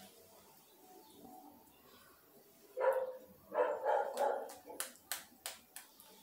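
A dog barking a few times, with a short first bark about three seconds in and a quick run of barks just after. Several sharp clicks follow near the end.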